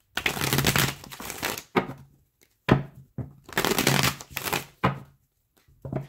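A deck of oracle cards being shuffled by hand: two long bursts of shuffling, with a few sharp taps of the cards between them.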